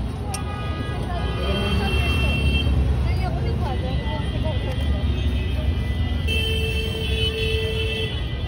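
Roadside street ambience: a steady low traffic rumble with voices in the background. A long, steady held tone sounds through the last couple of seconds.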